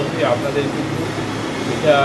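A man speaking in short phrases, over a steady low hum.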